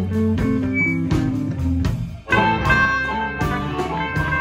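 Live electric blues band playing an instrumental passage: electric guitars over bass and a steady drum beat, with a harmonica played through a microphone. A little after two seconds the sound dips briefly, and then a louder phrase with held high notes begins.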